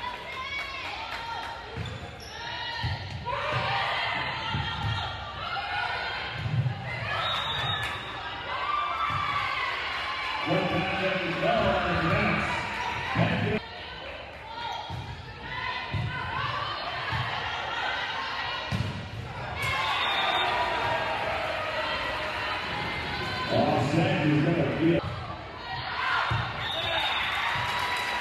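Volleyball match play in a school gym: the ball is struck and thumps on hands and floor during rallies, under steady voices of players and spectators in the echoing gymnasium.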